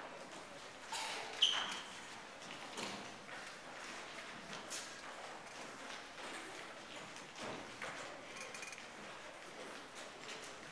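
Children's footsteps and shuffling on a stage floor as a crowd of them moves into new places: scattered light knocks and clicks, with a brief high squeak about a second and a half in.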